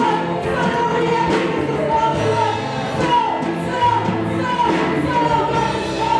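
Live gospel worship singing: a woman leads at a microphone with backing singers, over a live band with low bass notes. The voices hold long, drawn-out notes, and the sound stays steady throughout.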